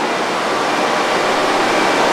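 Steady, even rushing hiss of machine-shop background noise, growing slightly louder.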